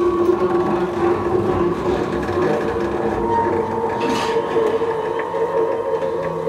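Free-improvised experimental music with a double bass: several long held tones over a rough, grainy scraping texture. A lower tone fades in the first seconds and a higher one comes in about halfway through, with a brief hiss shortly after.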